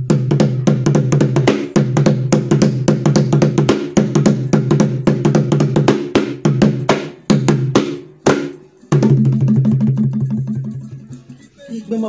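Drumming: fast, pitched drum strokes in a steady rhythm, with a short break about eight seconds in, then resuming and fading near the end.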